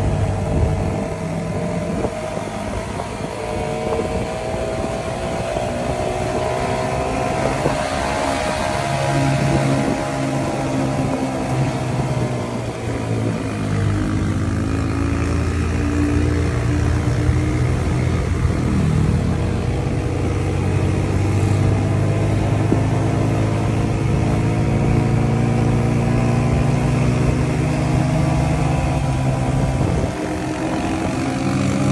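Small motorcycle engine running while riding, its pitch drifting up and down with changes in speed, with a dip about halfway through before it picks up again, over steady wind noise.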